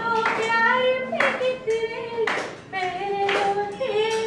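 A woman singing a Hindi film song into a microphone, holding long notes, while hand claps keep time about once a second.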